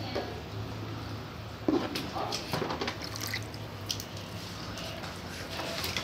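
Water splashing and dripping as a small child bathes in a basin, with a sharp knock a little under two seconds in.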